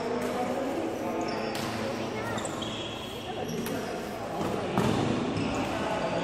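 Badminton hall sounds in a large echoing room: a few sharp knocks from play on the court over a background of distant voices, with short high squeaks scattered through.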